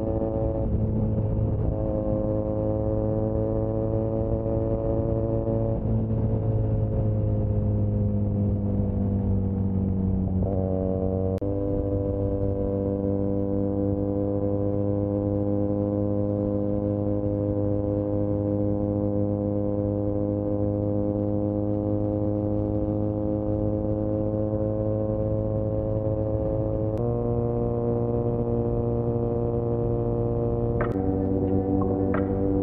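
Benelli 302R's parallel-twin engine running at cruise, heard through a microphone inside the rider's jacket. Its note holds steady for long stretches, sags slowly for a few seconds, then jumps up in pitch about a third of the way in and again near the end.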